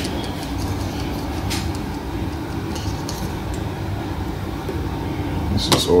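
Steady low hum in the background, with a few faint clicks from hands working the plastic headlight housing and bulb socket. A voice comes in near the end.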